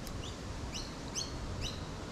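A small bird chirping repeatedly: short, high notes about twice a second over a faint background hiss.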